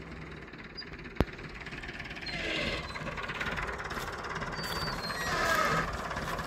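IMT 577 DV tractor's diesel engine running in the background, fairly quiet and growing somewhat louder in the second half. A single sharp click about a second in.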